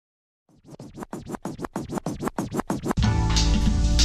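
Intro of a hip-hop track: a run of quick scratch-like swishes, about six a second and growing louder, then the full beat with heavy bass comes in about three seconds in.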